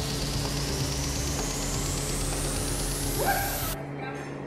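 A noise riser in the soundtrack: a hiss sweeping steadily up in pitch over a held low bass, cutting off abruptly near the end, with a brief gliding sound just before the cut.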